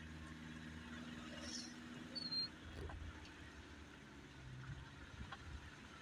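A vehicle's engine running low and steady, heard from inside the cabin as it drives slowly over a rough track, with a few faint knocks and a brief high chirp about two seconds in.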